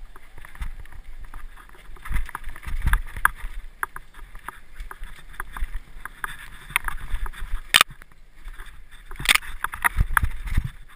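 Hardtail mountain bike ridden over a rough dirt trail: constant irregular rattling and clicking with low thumps as it hits bumps, and two sharp, loud knocks near the end.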